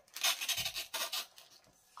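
Plastic packaging crinkling and rustling as it is handled, a quick run of scratchy rustles that dies away about halfway through.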